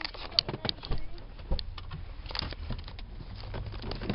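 Scattered knocks, clicks and rubbing of a handheld phone being moved about, over a low steady rumble inside a car.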